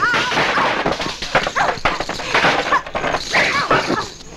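Fight-scene soundtrack of short, high-pitched yells and grunts from women fighters, mixed with sharp punch and kick hit effects in quick succession.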